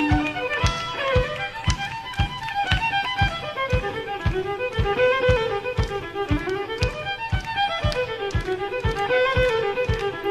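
Western swing band playing an instrumental passage led by fiddle, over a steady beat of about two and a half pulses a second.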